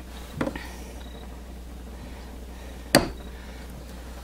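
Soap loaf being handled in an acrylic soap cutter: a faint short knock under half a second in and one sharp click about three seconds in, over a steady low hum.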